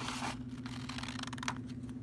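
Scissors cutting through a sheet of construction paper, a crisp crackle of fast small clicks in two runs, the second ending in a sharper snip about a second and a half in. A steady low hum runs underneath.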